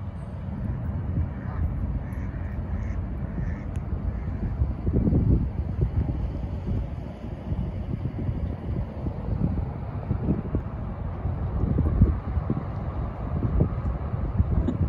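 Wind buffeting the microphone in uneven gusts, a loud low rumble. A few faint Canada goose honks come through in the first few seconds.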